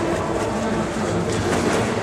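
Heavy cloth cover rustling and dragging steadily as it is pulled off a street organ, with many small ticks and scrapes.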